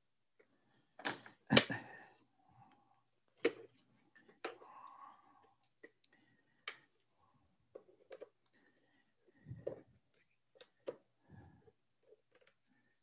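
Irregular clicks and knocks of small plastic antennas being handled and fitted to the antenna ports on the back of a Telus Smart Hub MF279 cellular modem. The two loudest knocks come about a second in, half a second apart, followed by lighter scattered clicks.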